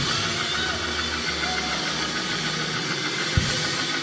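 Church band playing quietly after a song ends: sustained keyboard chords with low held bass notes, and a low drum thump at the start and another about three and a half seconds in.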